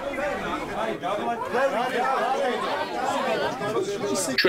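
Many people talking at once in a packed press scrum, overlapping voices with no single clear speaker, in a large room.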